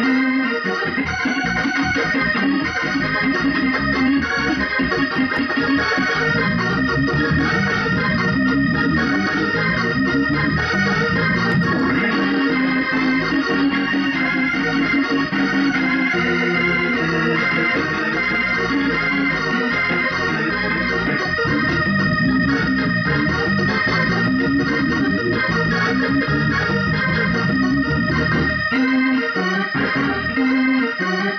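Extensively restored Hammond A-102 tonewheel organ played through a Leslie 147 rotating speaker cabinet: held chords over a moving lower line, without a break.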